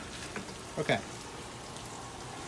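Steady hiss of running water, with no rhythm or break.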